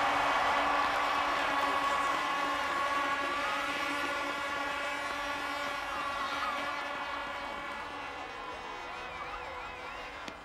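Several horn-like tones held together at once, fading slowly, over a crowd at a podium celebration, with a few wavering whistle-like notes in the later half.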